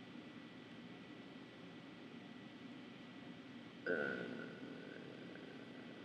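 Quiet room tone with a faint, steady high-pitched whine. About four seconds in comes a brief, soft vocal hum that fades within about a second.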